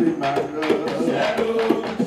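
Live bèlè music: voices chanting in held notes over a steady beat of bèlè hand drums.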